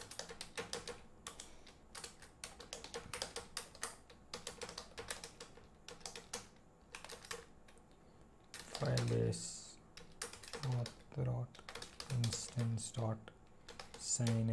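Computer keyboard being typed on: quick, irregular runs of keystrokes for about eight seconds. After that a voice speaks a few short quiet words, with more keystrokes between them.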